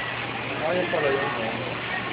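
Indistinct background voices talking over a steady, noisy din with a faint low hum.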